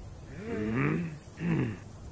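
Two short vocal sounds from a man or male character, about a second apart, each dropping in pitch.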